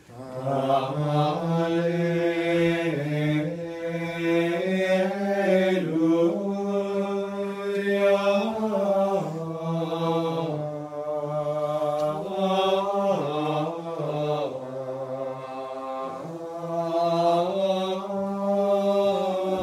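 Gregorian chant in Latin, sung unaccompanied in unison by men's voices. The melody moves slowly in long held notes that step from pitch to pitch.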